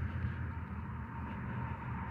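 Steady low rumble of road traffic, with no separate passing vehicle standing out.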